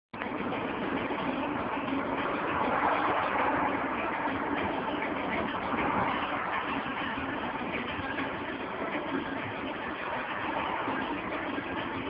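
Steady engine and road noise inside the cabin of a car driving in traffic.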